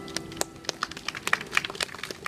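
Scattered hand-clapping from a small audience, irregular sharp claps, as the last notes of an electric keyboard fade out at the very start.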